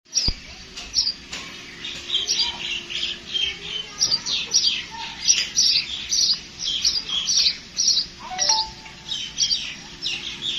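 House sparrow chirping: a steady run of short, high cheeps, about two or three a second.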